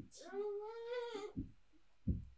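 A single drawn-out, high-pitched cry that rises, holds and falls in pitch over about a second, with a short low thump just before it and another as it ends.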